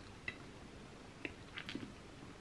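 A metal fork clinking lightly against a ceramic plate a few times as a forkful of pasta bake is picked up, with quiet room tone between the clinks.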